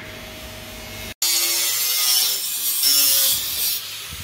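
An angle grinder working metal, a steady harsh hiss that starts abruptly about a second in after a brief low hum.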